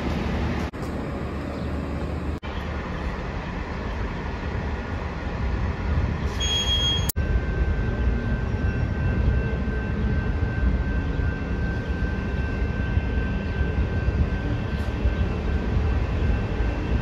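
Transit bus engines running, a steady low rumble under a concrete station canopy, cut off abruptly a few times in the first seven seconds; a faint steady high whine runs through the second half.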